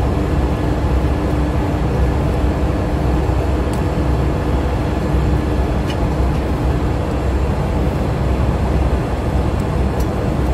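Steady drone of running diesel machinery in a ship's engine room, deep and unbroken with a faint hum in it. A couple of faint clicks, about four and six seconds in, come from tools on the generator's cylinder-head fittings.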